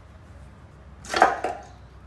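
Hands unscrewing the valve-cover nuts of a Honda B16 engine: quiet handling, with one short, sharp knock about a second in.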